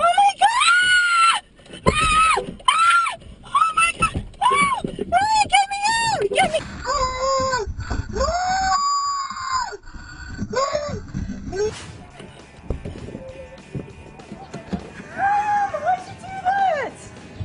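A woman screaming in repeated short, high-pitched shrieks, more than one a second, in panic at the hissing cockroaches she has found in her gift box. The screams die away about eleven seconds in.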